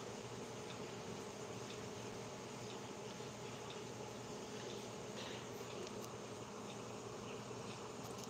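A steady, low buzzing hum that does not change, with faint hiss behind it.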